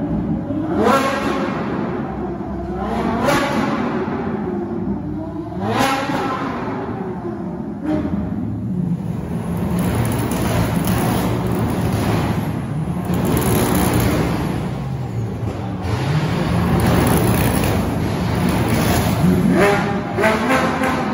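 Sports car engines blipping the throttle under an arched brick bridge: several short rising revs in the first six seconds and another near the end. In between, a Ferrari's engine runs low and swells a few times as the car pulls slowly past.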